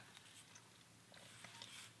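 Near silence with faint scratching of a ballpoint pen on paper, a little stronger in the second half.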